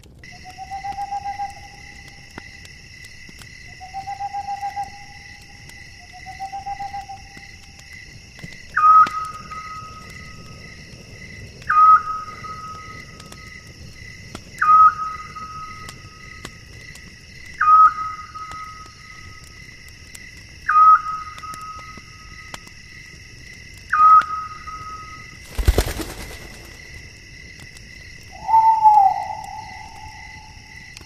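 Night ambience: a steady chorus of insects with whistled animal calls over it. First come three trilling calls, then six higher calls about three seconds apart, each sliding briefly down and then holding one note, and near the end a longer, lower call. About 26 seconds in there is one sharp, loud crack.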